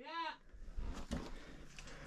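A faint, distant man's voice calling back a short one-word reply, muffled by the rock of the mine shaft, then quiet scuffs and rustling of someone moving over rock.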